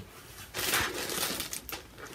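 Plastic wrapping crinkling as it is handled, an irregular rustle that starts about half a second in and dies away shortly before the end.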